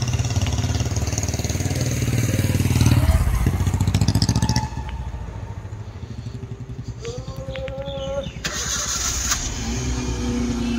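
Vehicle engine running while driving along a city street, loud for the first half and then dropping away sharply, with a rising whine near the end.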